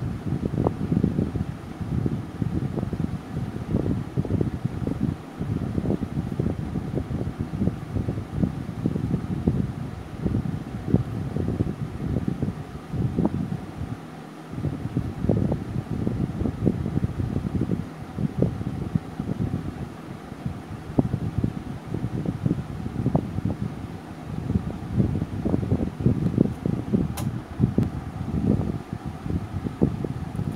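Air from a running fan buffeting the microphone: a continuous low, uneven rumble.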